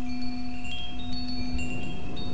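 Wind chimes ringing, short high notes sounding at irregular moments over a steady low drone.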